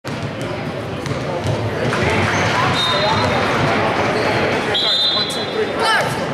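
Gymnasium hubbub during a youth basketball game: overlapping voices echoing in the hall, with a basketball bouncing on the court. A thin high squeal sounds briefly about halfway through and again, longer, near the end.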